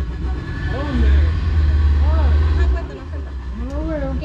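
Boat's outboard motor running: a steady low drone, louder from about a second in until near three seconds.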